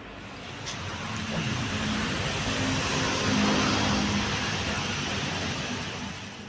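A road vehicle driving past, its engine and tyre noise swelling to a peak about halfway through and fading toward the end.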